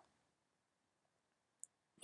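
Near silence, broken once by a single faint, high click a little past one and a half seconds in, from a computer mouse.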